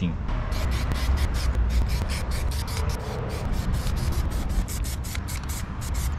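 Aerosol spray paint can hissing in many short, rapid bursts as engine cam pulleys are sprayed, over a low steady rumble.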